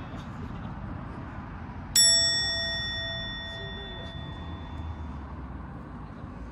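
A single bright metallic ding about two seconds in, ringing with a clear high tone and fading out over about three seconds, over steady outdoor background noise.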